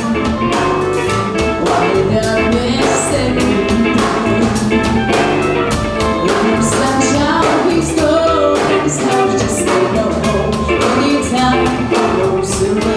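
A live band playing an upbeat song: a drum kit keeping a steady beat under electric guitar and a melody line.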